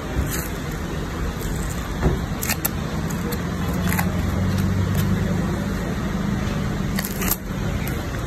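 Road traffic: a motor vehicle engine's low hum that swells about halfway through and eases near the end, with a few sharp clicks and taps.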